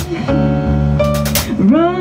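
Small live band playing: electric bass, keyboard chords and a drum kit with cymbal hits. Near the end a female voice slides up into a held sung note.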